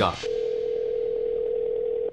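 Ringback tone of an outgoing phone call: one steady ring lasting nearly two seconds, then cut off.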